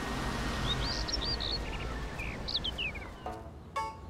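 Outdoor ambience of a steady hiss with birds chirping a few times, and two short pitched blips near the end.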